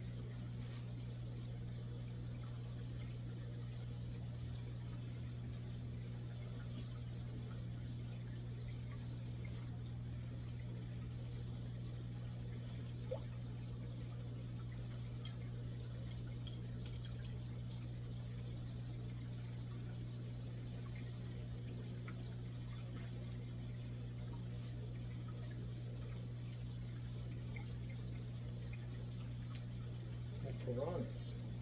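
Saltwater aquarium equipment running: a steady low hum from the pump and powerhead, with water trickling and bubbling. A few faint clicks come around the middle.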